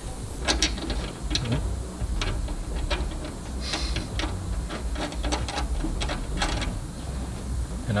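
Irregular metallic clicks and clinks as a suspension bolt, washers and nut are fitted by hand through a lower control arm mount.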